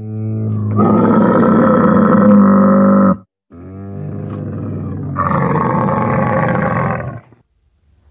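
A camel calling: two long, loud calls of about three to four seconds each, separated by a brief break about three seconds in. It is a strange sound.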